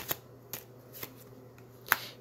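Tarot cards being handled: a few faint card clicks, then a sharp snap near the end as a card is laid down on the spread.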